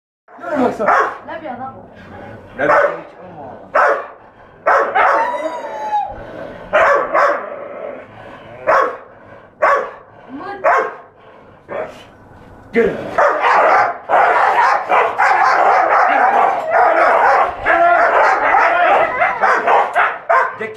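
A leashed Belgian Malinois and a caged husky barking at each other through the bars: single sharp barks every second or two at first, then from about 13 s in a continuous frenzy of rapid barking and snarling.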